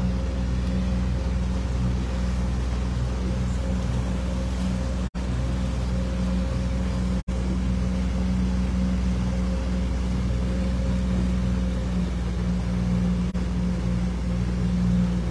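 Outboard motor running steadily at cruising speed, pushing the boat along with a constant even hum and the wash of water and wind over it. The sound drops out for an instant twice, about five and seven seconds in.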